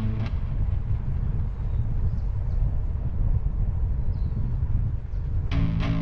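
Wind rumbling and buffeting over the microphone of a bicycle-mounted camera while riding, a loud, uneven low noise. A music track stops just after the start and comes back in near the end.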